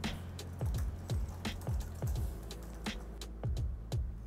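Light, irregular clicking of a Logitech MK470 slim wireless keyboard's keys being typed on: not that noisy. Background music with a bass beat plays underneath.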